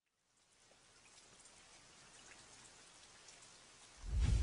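Faint steady hiss with light pattering ticks, fading in from silence about half a second in and growing slowly louder.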